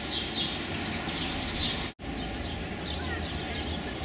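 Small birds chirping repeatedly in short, falling calls over steady outdoor background noise. The sound drops out for an instant about two seconds in.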